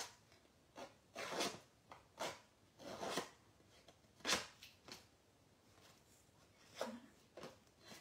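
A handheld paper-distressing tool scraping along the edge of patterned paper. It makes a series of short, dry scraping strokes, about eight, unevenly spaced, roughing up the paper edge.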